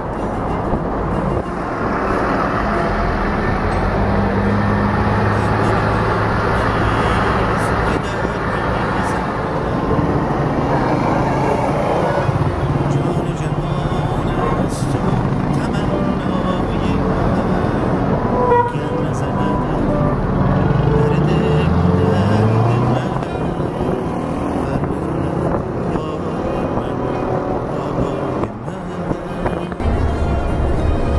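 Busy city street traffic heard from a moving vehicle: engines running, car horns tooting and voices in the background, with an engine note rising over a couple of seconds about two-thirds through.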